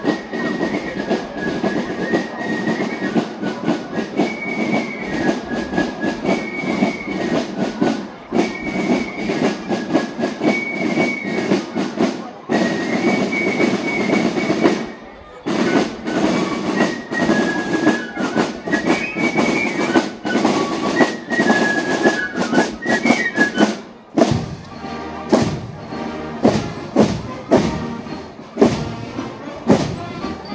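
Marching band of flutes and snare drums playing a march: a high flute melody over a steady drum rhythm. About 24 seconds in the melody stops and the drums go on alone, beating a steady cadence.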